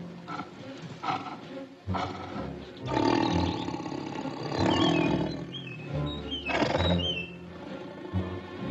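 A big cat roaring several times, the loudest roars from about three seconds in, over orchestral film music. Short high chirping bird calls come between the later roars.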